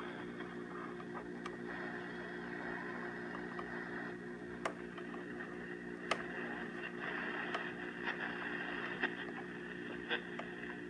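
1959 Bulova Model 120 vacuum-tube AM clock radio giving out steady static hiss over a low hum, with a few sharp crackles and no programme audible.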